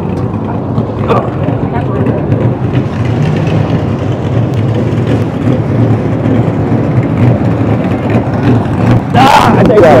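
A steady low motor rumble runs throughout, with background voices over it. A person speaks briefly near the end.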